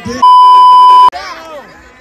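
A censor bleep: one loud, steady, high-pitched beep just under a second long, dubbed over the speech and cutting off sharply, with voices taking up again right after.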